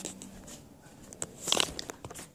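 Rustling and small clicks of a handheld phone being moved and handled close to its microphone, with a louder scrape about one and a half seconds in.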